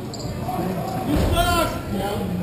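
Hockey play on a sport-court floor: knocks of sticks and puck, with a thud a little past a second in, followed at once by a short shout from a player.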